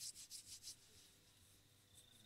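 Near silence: a few faint, short rustles in the first half-second or so, then only room tone.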